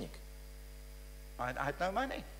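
Steady electrical mains hum with a stack of even tones through a quiet gap, then a man's voice over the microphone starts again about one and a half seconds in.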